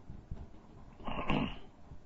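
A man's short throaty vocal noise, about a second in and lasting about half a second, between stretches of low room noise.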